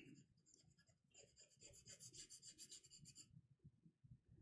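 Charcoal pencil scratching faintly on toned drawing paper in quick repeated circular shading strokes, which stop shortly before the end.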